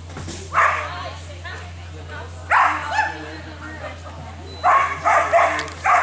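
A dog barking in short, sharp barks: one about half a second in, another about two and a half seconds in, then a quick run of four near the end, over a steady low hum.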